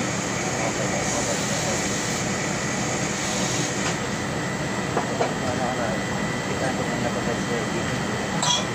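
Aerosol spray can hissing in one long spray of about four seconds that stops abruptly, over a steady background hum of machinery.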